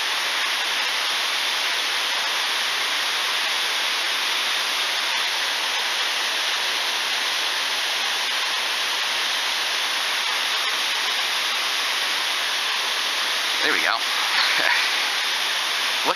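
Steady rushing of water pouring over and below a spillway, a constant even hiss of falling water.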